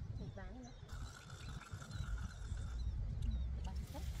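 A man's voice moaning in pain, a short wavering cry about half a second in and another rising cry near the end, over a steady high hum and low rumble.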